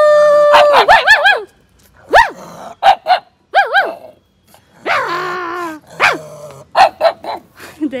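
A pug barking in a string of short barks, mixed with a man barking and growling back at it in imitation of a dog, in a play fight. The exchange opens with one long drawn-out call.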